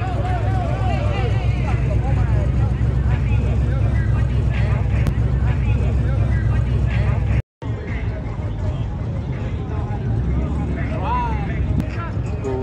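Crowd chatter over a steady, low engine rumble from a car running nearby; the sound cuts out for a moment about seven and a half seconds in, and the rumble is weaker after it.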